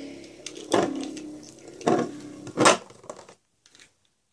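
A Beyblade spinning top whirring steadily in a plastic stadium, with three sharp knocks; it all stops about three seconds in.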